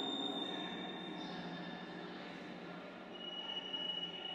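Ambient electronic soundscape: a sustained drone over a low hum, with thin high whistling tones, one fading out about a second in and a lower one coming in about three seconds in.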